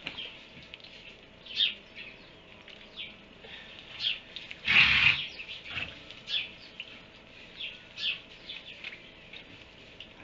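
Small birds chirping in short, irregular calls, with a louder burst of noise about five seconds in.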